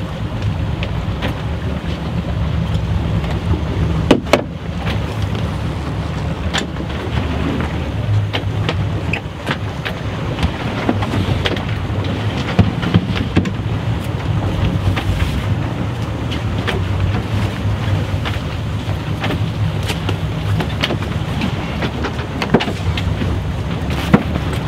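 A fishing boat's engine running steadily under way, with wind noise on the microphone. A few sharp knocks stand out, the loudest a little after four seconds in.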